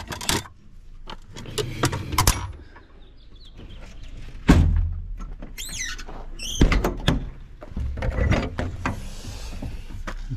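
Service-truck body compartments being handled: metal clacks and knocks, a heavy thunk about halfway through, a brief squeak just after, then more clatter as a compartment door is opened.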